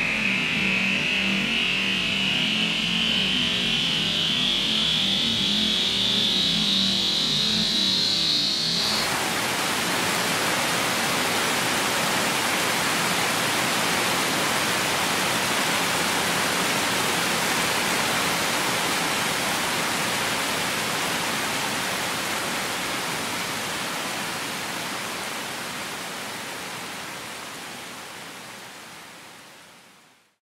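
An electronic tone slowly rising in pitch over a low hum; about nine seconds in it gives way abruptly to a steady rushing hiss like heavy rain, which fades out over the last several seconds.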